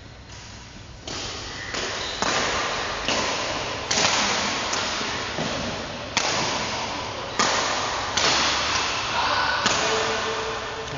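Badminton rally: rackets striking a shuttlecock about once a second, each sharp hit ringing on in a large, echoing sports hall.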